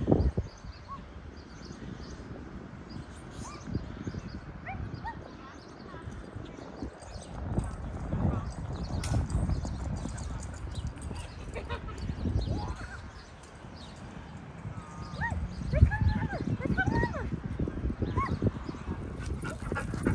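Dogs barking and yipping now and then, in short calls that come more often in the second half.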